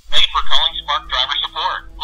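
A recorded voice speaking over a telephone line, with the narrow, tinny sound of a phone call: an automated phone menu.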